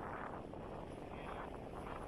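Choppy seawater washing against a stone harbour wall, with wind rumbling on the microphone: a steady, even rush with soft surges and no distinct events.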